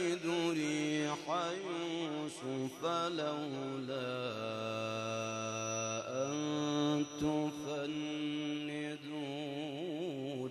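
A man's voice in melodic, chanted Quran recitation (tajwid), drawing out one long ornamented phrase with wavering turns of pitch. A steady held note comes about four seconds in and lasts nearly two seconds.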